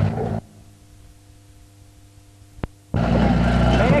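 A rally car's engine idling with voices over it, broken by a gap of about two and a half seconds where the sound drops away to a faint hum and a single click: a dropout on the old videotape. The engine and voices come back near the end.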